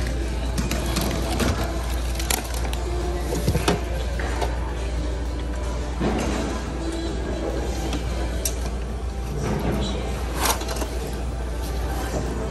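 Background music in a large store with faint voices, and occasional light clicks and knocks of goods being handled in a bin, all over a steady low hum.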